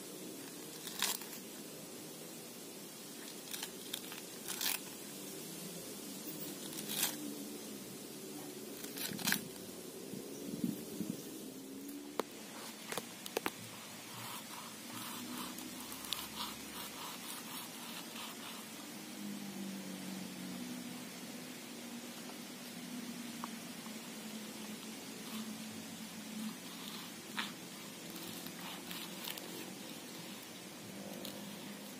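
A knife cutting through the fibrous, watery stem of a banana plant on a stone surface: a string of crisp cuts and clicks at irregular intervals.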